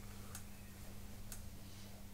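Quiet room tone with a steady low hum and two faint ticks about a second apart.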